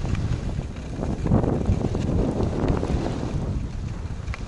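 Wind rushing over the microphone of a moving skier's camera, with skis sliding and scraping on groomed snow; the rushing swells louder for a couple of seconds about a second in.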